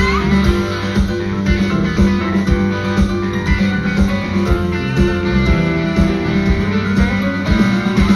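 Live band music in an instrumental passage between vocal lines: guitar over a steady drum beat.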